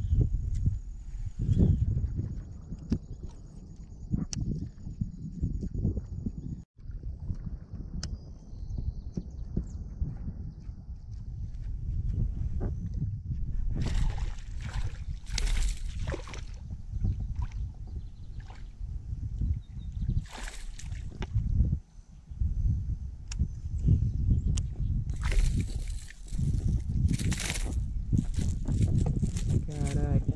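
Water splashing and sloshing as a small yellow peacock bass fights on the line at the surface beside a kayak, in several bursts of splashing from about halfway through, over a steady low rumble.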